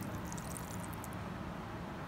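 Egg-and-milk batter pouring in a thin stream from a bowl onto a bread slice in a glass dish: a quiet, steady liquid pour.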